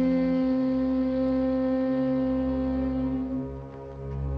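A single long, loud horn note held steady, fading out about three and a half seconds in, over softer orchestral film music.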